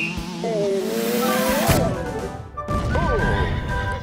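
Film soundtrack of music and sound effects: a wavering tone rises and ends in a sudden crash about halfway through, followed by a sharp knock and a short rising-and-falling tone.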